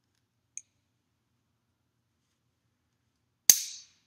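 A faint click about half a second in, then one sharp, loud metallic click with a short ringing tail near the end: a metal carabiner's spring gate snapping shut.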